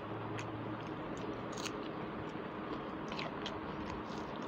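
A person chewing a mouthful of rice and curry close to a lapel microphone, with many small, sharp mouth clicks and smacks scattered irregularly through the chewing.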